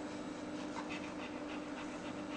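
German shepherd bitch panting quickly and evenly, about five breaths a second, as she labours during whelping.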